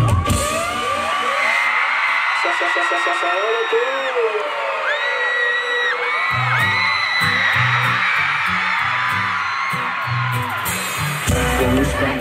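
Large crowd of fans screaming and whooping through a breakdown in live concert music: the beat drops out, a bass pulse comes back about six seconds in, and the full beat returns near the end.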